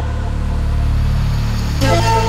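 Background music: a sustained low bass chord that changes to a new chord near the end.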